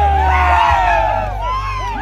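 A close group of men cheering and whooping together, many shouts overlapping. A low rumble runs underneath and stops under a second in.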